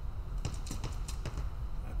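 Light, quick footsteps of sneakers tapping on the floor during side-to-side footwork steps, over a steady low hum.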